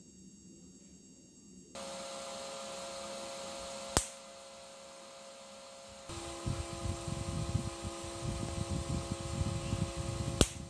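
Home-made electric fence energizer circuit powering up about two seconds in with a steady high whine over a hum. About four seconds in comes a single sharp snap. From about six seconds the whine drops to a lower tone over an irregular crackling rumble.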